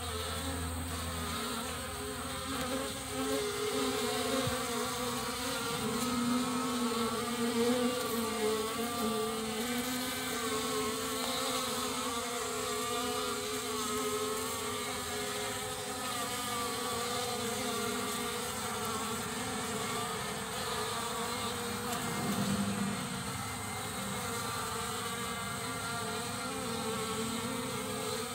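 Honeybee colony buzzing at an opened hive: a steady hum of many wingbeats that wavers slightly in pitch.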